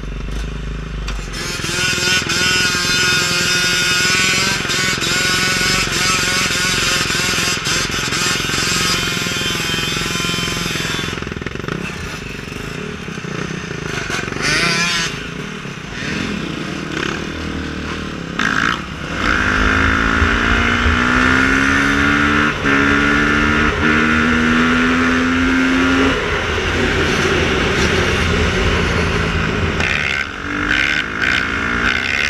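Dirt bike engine heard from on board while riding. Past the middle it accelerates through the gears: its pitch rises in three runs, broken by shifts.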